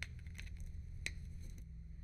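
Near-quiet room with a low steady hum and two faint clicks, one at the start and one about a second in, from hands handling small plastic drone parts.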